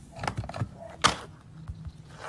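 Plastic handset of a retro-style telephone being lifted off its cradle: a few clattering knocks, then one sharp click about a second in.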